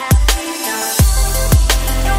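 Electronic background music with a heavy kick-drum beat. A rising hiss sweep leads into a deep, sustained bass line that comes in about a second in.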